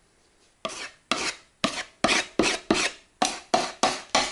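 A putty knife scraping brown wood-floor filler paste into cracks and knots in wooden floorboards, in short repeated strokes about three a second. The strokes start about half a second in.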